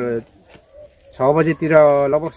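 Speech: a man talking, with a pause of about a second near the start.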